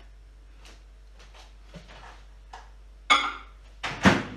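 Faint knocks and steps, then a microwave oven door shut with a loud clunk about three seconds in and a second sharp knock just before the end, as the microwave starts to hum.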